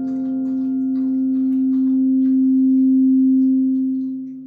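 Acoustic guitar's last note left ringing as one steady tone that dies away near the end, with a few faint clicks of fingers on the strings.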